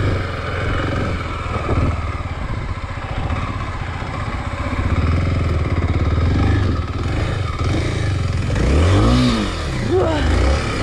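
Kawasaki KLX250 trail bike's single-cylinder four-stroke engine running at low revs over rough ground, the note rising and falling with the throttle. Near the end it revs up sharply and drops back once.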